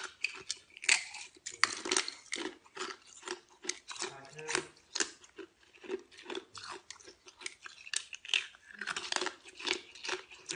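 Ice being bitten and chewed close to the microphone: a rapid, irregular run of sharp crunches.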